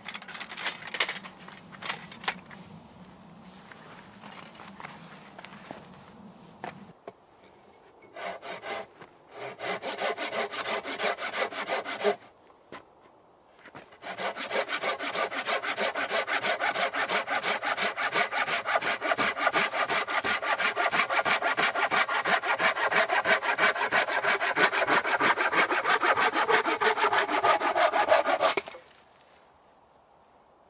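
A hand saw cutting through a log in steady, even back-and-forth strokes. The sawing breaks off briefly about twelve seconds in, then runs on until it stops abruptly near the end. Near the start there are a few sharp metal clicks from a folding metal stove being handled.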